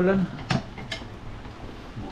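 Steady hiss of falling rain, with two sharp clicks about half a second apart.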